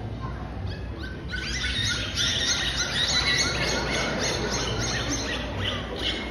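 Dolphins whistling through their blowholes on cue: a rapid run of short, high rising chirps, about four a second, starting a little over a second in and stopping near the end.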